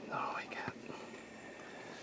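A person whispering briefly in the first second, then faint steady background hiss.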